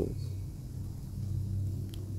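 A steady low hum or rumble, with no sudden events.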